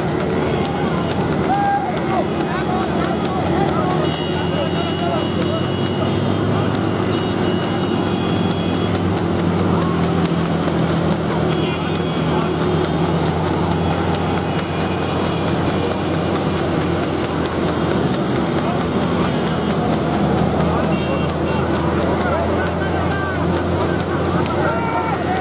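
Motorcycle and car engines running steadily, close by, with men's voices shouting over them.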